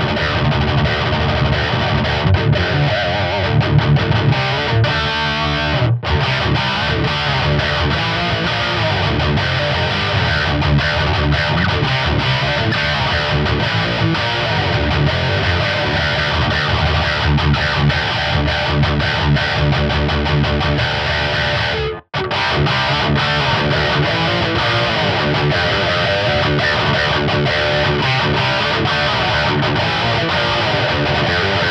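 Two-humbucker electric guitar (Mensinger Foreigner) played with distortion through an Aurora DSP Cerbes amp-simulator plugin: continuous riffing and strumming. The playing stops for a split second about 22 seconds in, then goes on.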